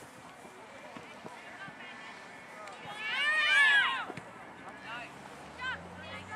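Several high-pitched voices shouting at once for about a second, a little past the middle, with a couple of shorter calls after it: people at a youth soccer game calling out during play.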